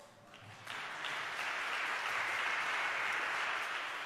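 Audience applauding, starting under a second in, holding steady, and thinning out near the end.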